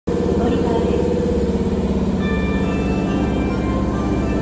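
Electric train standing at an underground platform, its onboard equipment giving a steady, layered electrical hum with a fast buzzing pulse. A few higher steady tones join about halfway through.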